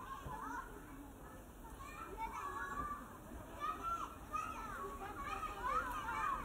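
A crowd of children's voices chattering, calling and laughing, as in a field recording of kids at play, growing louder toward the end.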